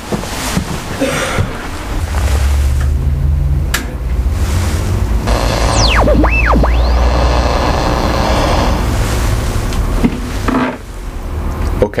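Vintage valve communications receiver being tuned: a steady low hum and hiss of static, with whistling tones that sweep sharply down and back up about halfway through as the dial passes over signals. A few sharp clicks from the controls.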